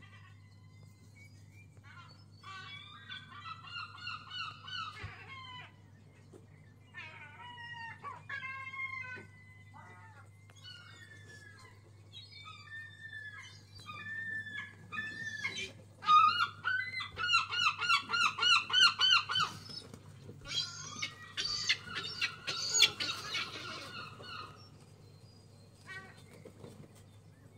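Birds calling in bouts of repeated, honking notes, with a fast, loud series of calls past the middle and another near the end.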